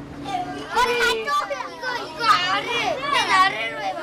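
Young children talking in high voices, calling out that they already know what is being explained.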